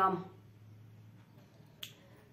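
A woman's word trailing off, then a quiet pause with a faint low hum, broken near the end by one short, sharp click.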